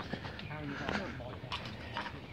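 Faint talk of other people in the background, with a few light clicks and rustles.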